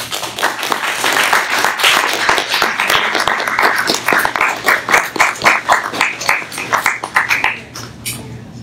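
Audience applauding: a dense spread of hand claps that thins out after about halfway into a few separate claps, then stops just before the end.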